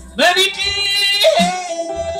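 A sung vocal line with no clear words: the voice slides up into a note, then leaps higher about a second in and holds it.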